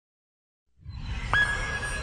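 Silence, then at the start of an intro jingle a swelling whoosh with a low rumble comes in; about halfway through, a synthesized tone drops in pitch and holds steady.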